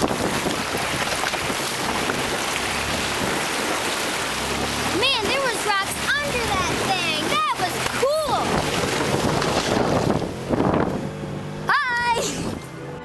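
Icy creek water churning and splashing as a vehicle fords through broken ice, a loud continuous rush. Several short high-pitched cries rise and fall over it in the middle, and once more near the end.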